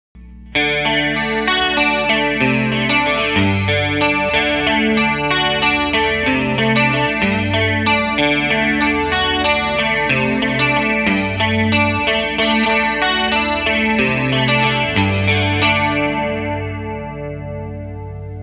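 Strat-style electric guitar played through a stacked Mesa/Boogie DC-3 and a 1984 Roland JC-120 with its chorus on, picking a steady riff that starts about half a second in. The notes ring out and fade over the last two seconds.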